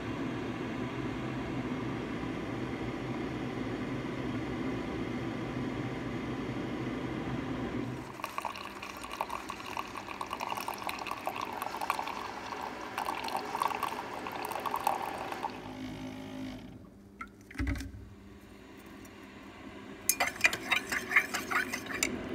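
Keurig single-serve coffee maker running with a steady hum, then coffee streaming into a ceramic mug for about seven seconds before the flow breaks up and stops. A low knock follows, and near the end a metal spoon clinks quickly against the ceramic mug as the coffee is stirred.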